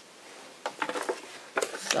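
Light clicks and taps of small craft items being picked up and handled on a cutting mat while a rubber stamp is fetched, starting about half a second in.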